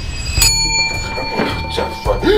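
A counter service bell struck once, about half a second in, with a clear metallic ding that rings out for over a second.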